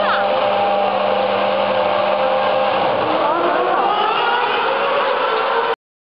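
A racing car engine rises in pitch as the car accelerates, about halfway in, over a steady hum and background voices. The sound cuts off abruptly just before the end.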